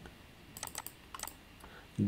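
A few faint clicks from a computer keyboard: light taps about half a second in and again a little past the middle.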